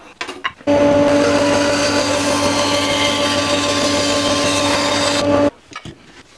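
An electric power tool used on wood starts about a second in, runs steadily at one speed for about five seconds with a steady whine, then stops suddenly. A few light knocks come just before it starts.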